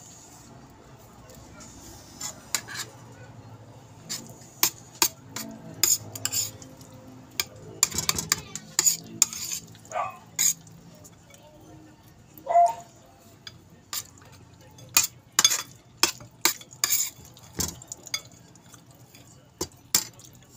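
Cutlery clinking and scraping against plates, with scattered sharp clicks and the mouth noises of people eating.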